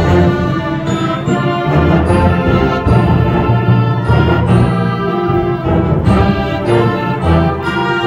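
Student concert band of flutes, clarinets and other winds playing live, in sustained chords that change every second or so over a strong bass line.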